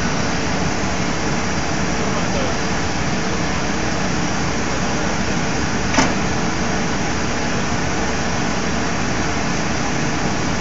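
Class 182 electric locomotive standing or creeping close by, its cooling blowers giving a steady rushing noise with a faint steady hum. A single short click comes about six seconds in.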